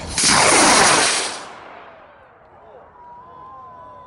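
A model rocket motor ignites and launches with a loud whoosh that lasts about a second and a half, then fades quickly as the rocket climbs away.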